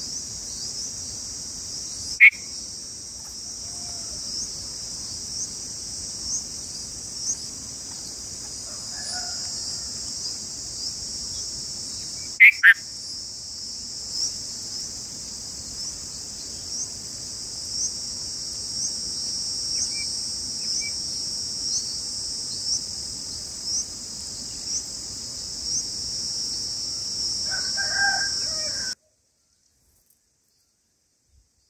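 A steady high-pitched insect chorus with a regular chirp about once a second. Two short sharp calls cut through it, one about two seconds in and one near the middle, and a longer call, like a distant rooster crowing, comes near the end before the sound cuts off.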